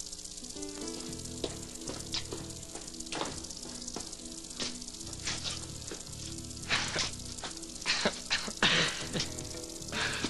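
Soft background underscore music, slow held notes that shift in pitch, over a steady hiss, broken by several brief hissing bursts.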